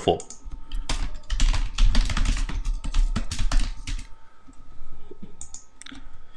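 Typing on a computer keyboard: a fast run of keystrokes lasting about three seconds, followed by a few separate clicks near the end.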